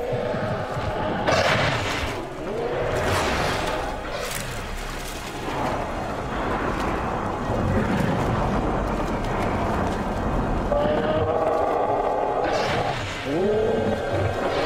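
Documentary soundtrack music with sound-effect roars of a Tyrannosaurus rex. Several calls rise in pitch: one at the start, one about two and a half seconds in, and two near the end. Sudden loud hits come in the first few seconds.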